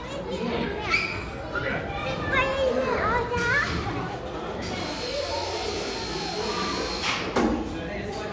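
Children's voices and chatter in a large indoor play hall. A high child's voice rises and falls in the first half, and there is a single sharp knock near the end.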